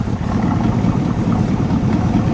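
The 283 cubic-inch V8 of a 1965 Chevrolet Chevelle Malibu idling steadily, heard at one of its dual exhaust tailpipes.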